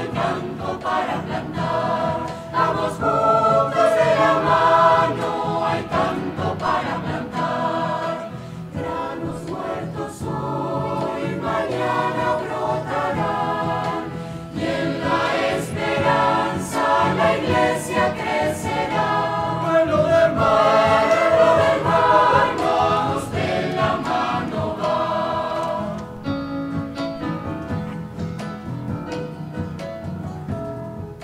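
Mixed choir of men, women and children singing together, growing somewhat softer near the end.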